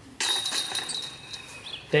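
A disc striking the hanging chains of a disc golf basket and dropping into the cage, a made putt. The chains jingle sharply and then ring, fading away over the next second and a half.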